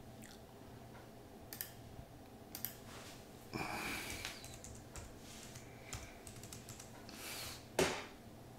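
Faint computer keyboard typing: a handful of soft key clicks as a word is typed, with scattered mouse clicks, a brief soft rush of noise about halfway and one louder click near the end.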